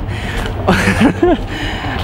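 A man's short breathy vocal sound, a huff of breath followed by a brief voiced murmur, under a steady low rumble.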